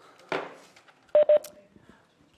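A knock, then two short electronic beeps about a fifth of a second apart, each a steady mid-pitched tone; the beeps are the loudest sounds.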